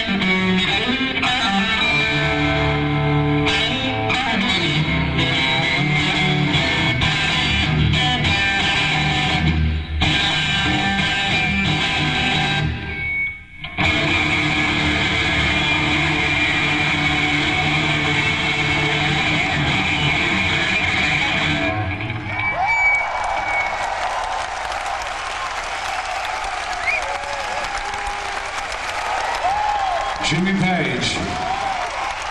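Electric guitar played solo, with a brief break about halfway. The piece ends about two-thirds of the way through, and a concert audience then applauds and cheers.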